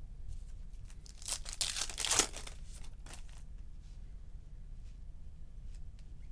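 Baseball card pack wrapper being torn open and crinkled: a burst of tearing and crinkling a little over a second in, lasting about a second, then a brief smaller rustle.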